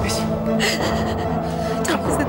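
A woman sobbing and gasping in short bursts over a sustained dramatic music score.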